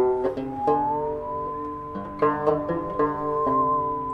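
Bowed musical saw playing one long note that slides up in pitch about a second in, then holds and takes on a wavering vibrato near the end, over plucked banjo notes.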